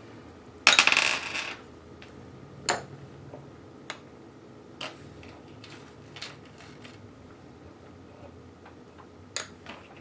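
Flat glass gem stones clinking against one another and the table as they are picked over and set with metal tweezers. There is a longer clatter about a second in, then scattered single clicks.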